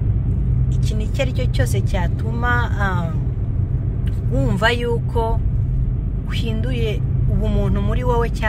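Steady low rumble of a car being driven, heard from inside the cabin, with a person talking over it.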